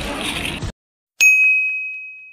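A single bright bell-like ding about a second in, a sharp strike that rings on as one clear high tone and slowly fades, used as a transition sound effect. Before it, outdoor background noise cuts off abruptly to silence.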